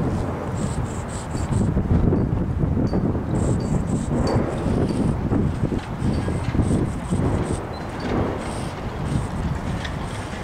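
Wind buffeting the camera microphone: an uneven, gusting low rumble.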